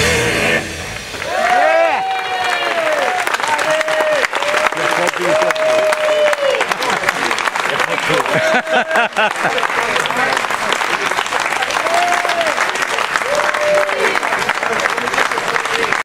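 Live blues band's last chord cuts off at the very start, then an audience applauding and cheering, with people calling out over the clapping throughout.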